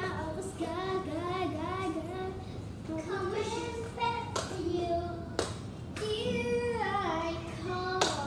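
A young girl singing a melody in a clear, high voice, with two sharp smacks about a second apart midway through.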